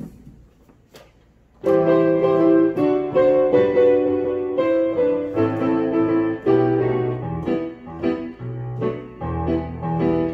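Piano starts playing a hymn introduction about two seconds in, after a brief near-quiet pause with a couple of faint clicks: sustained chords over a moving bass line, in a minor key and 5/4 time.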